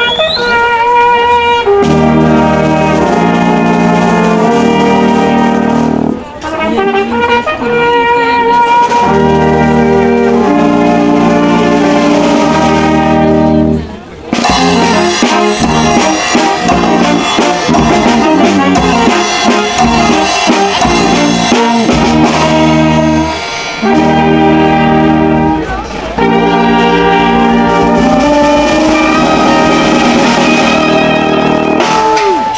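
Brass band of trumpets, clarinet and tuba playing a folk tune in the open air, with brief breaks between phrases about six and fourteen seconds in.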